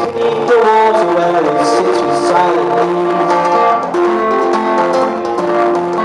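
Acoustic guitar played live in a song, with chords ringing steadily.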